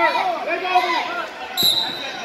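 Spectators shouting, then about one and a half seconds in a thump on the wrestling mat and a short, shrill referee's whistle blast: the referee's signal that the match has been stopped on a fall.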